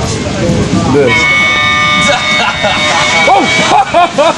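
A small toy trumpet blown in one long, steady, high note, starting about a second in and held for nearly three seconds, over the rumble of a moving train.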